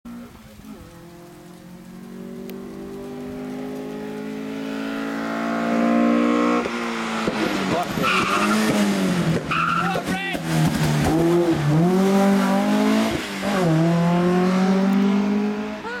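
A BMW E30 rally car's engine approaching under hard acceleration, its note climbing steadily, then dropping sharply at a gearshift about six and a half seconds in. After that the revs rise and fall several times as the car comes past close by, loud.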